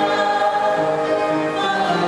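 Small gospel vocal ensemble singing together in harmony, holding long sustained notes.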